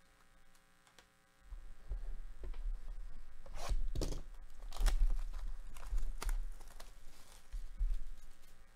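A sealed Donruss basketball hobby box being unwrapped and opened: several short ripping sounds of its wrapper tearing, starting about three and a half seconds in, over the low rumble of the box being handled.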